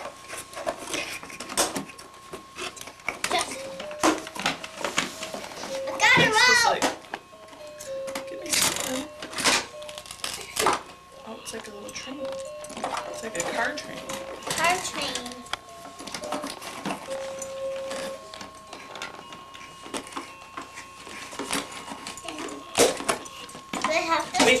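Fisher-Price musical zoo train toy playing a simple electronic tune, one plain note after another, for about fifteen seconds, over clicking and rustling of toy packaging being handled. A toddler's loud wavering vocal breaks in about six seconds in.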